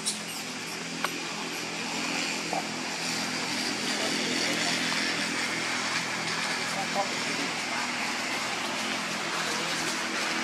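A vehicle engine running steadily, a little louder from about two seconds in, with indistinct voices in the background and a few faint clicks.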